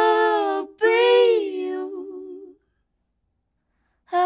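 A young woman singing unaccompanied, slow and soft: a held note, a brief break, then a second sustained phrase that fades out about two and a half seconds in, followed by silence.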